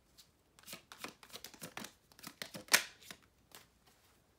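Tarot cards being shuffled and handled: a quick, irregular run of crisp card flicks and rustles, the loudest snap a little before three seconds in.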